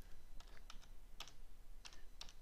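Faint typing on a computer keyboard: about half a dozen separate, unevenly spaced key taps as a short word is typed.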